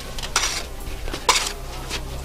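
A few short knocks with a faint ring, the loudest about half a second in and just after a second in. The second one leaves a brief ringing tone.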